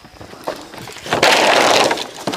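A bundle of leafy bamboo branches rustling and crackling as it is put down onto a pile of cut bamboo poles. A loud rustle starts a little over a second in and lasts most of a second.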